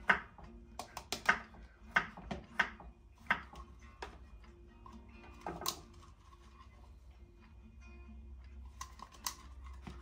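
Kitchen knife chopping on a wooden chopping board: a run of irregular sharp taps in the first few seconds, then a few more later on. Faint background music plays underneath.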